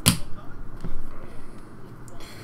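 Trading cards being flipped through by hand: a sharp snap of card against card right at the start, and a fainter click about a second in.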